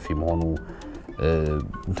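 A voice speaking in short phrases over soft background music.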